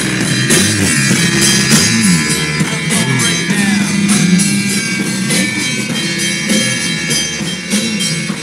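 Music from a live DJ set playing loud over the sound system: a track with a steady drum beat and a moving bass line.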